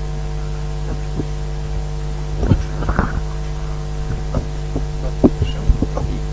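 Steady electrical mains hum from the sound system, with scattered knocks and rustles of a microphone being handled and passed along, the loudest about two and a half seconds in and again near the end.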